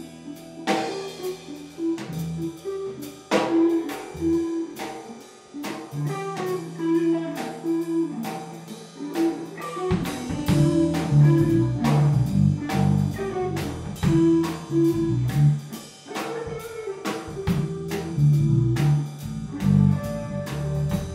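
Blues-rock band jamming live: electric guitar lead over a Mapex drum kit keeping a steady beat, with bass guitar and keyboard. The low end fills out about halfway through as the bass comes in heavier.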